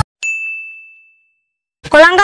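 A single bright ding: one clear high tone struck sharply that rings and fades away over about a second, a sound effect at a cut between scenes.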